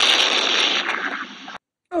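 Explosion sound effect: a sudden burst of noise that fades over about a second and a half and then cuts off.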